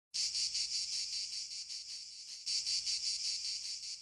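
Cicadas singing in a dense chorus, a shrill buzz that pulses rapidly. It starts abruptly and swells louder again about halfway through.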